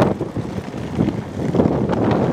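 Wind buffeting the microphone: a loud, irregular, gusting rumble that surges and falls, strongest near the end.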